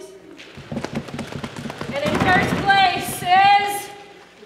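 Audience drum roll: a rapid patter of stamping and tapping that builds in loudness, joined about halfway through by voices in rising, held calls.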